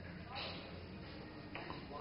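Faint, indistinct background voices over the quiet hum of a billiard hall.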